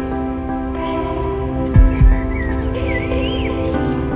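Background music of sustained chords, with two low drum hits about two seconds in and warbling high glides over it shortly after.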